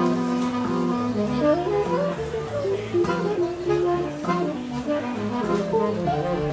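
Tenor saxophone, accordion and electric guitar improvising freely together. A low held note opens, then short shifting melodic lines follow over plucked guitar notes.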